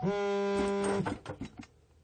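A loud, steady buzzing tone that starts suddenly, holds for about a second and cuts off sharply, followed by a few quick knocks.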